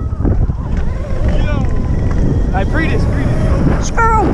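Heavy wind rumble on the microphone of an electric dirt bike riding along a path. Short shouted calls cut through it about a second in, again near three seconds, and at the end.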